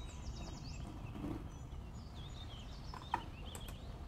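Quiet room background with a steady low hum, a few faint high chirps, and a single sharp click about three seconds in.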